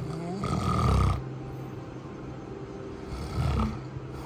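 A sleeping man snoring: two loud snores about three seconds apart, the first longer and louder.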